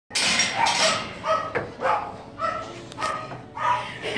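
Dogs barking in play: a string of short barks, about two a second.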